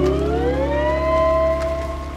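Background music: a steel guitar note slides up in pitch over about a second, then holds and begins to fade.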